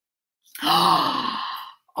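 A person's long, breathy gasp of surprise, starting about half a second in and lasting just over a second, its pitch rising and then falling.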